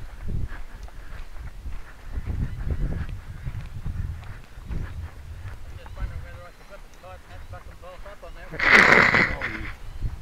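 Wind buffeting the microphone in low, uneven gusts, with faint voices in the background. A loud, harsh sound lasting under a second comes near the end.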